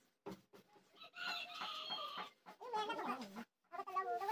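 Chickens calling, led by a rooster crowing: a long call of over a second in the middle, a shorter call that falls in pitch, and another wavering call starting near the end.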